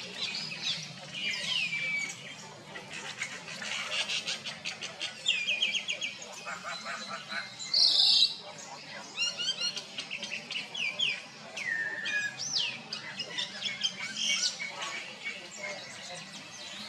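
Birds chirping and whistling in quick, varied phrases, with falling whistles and fast trills. One brief, loud, harsh call comes about halfway through.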